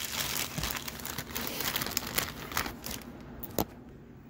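Close handling noise from the phone being set down face-first: rustling and crinkling with many small clicks right at the microphone, dying down toward the end with one sharper click.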